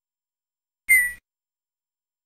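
A single short Tux Paint sound effect about a second in: a brief whistle-like beep that falls slightly in pitch and dies away quickly, played as the stamp tool is being used.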